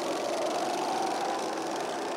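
A group of Honda Pro-kart engines running at high revs as the karts pass down a short straight, a steady, slightly rising drone. The engines are revved out completely, held back by their restricted setup.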